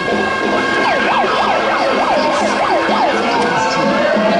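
A siren sounding: a steady tone, then from about a second in a rapid up-and-down yelp, about three sweeps a second, changing near the end to a slow rising wail.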